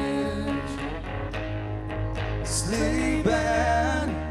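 Live band music from an acoustic guitar and a hollow-body electric guitar, with steady held notes under a sliding, wavering lead note in the second half.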